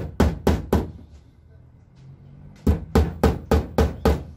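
Claw hammer tapping a fastener into a metal hasp on a wooden cabinet door: four quick blows, a pause of about two seconds, then five more, about four a second.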